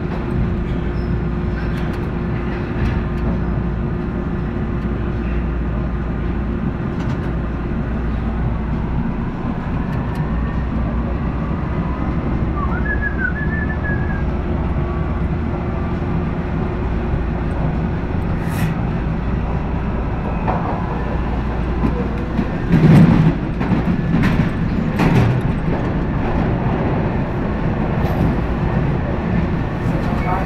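Toronto subway H6 train running through a tunnel, heard from the front car: a steady rumble with a motor hum. A few loud knocks come about three quarters of the way through.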